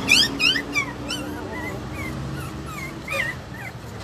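Young puppy whimpering and yelping while it is given an injection: a quick run of high, falling cries in the first second, then fainter, scattered whines.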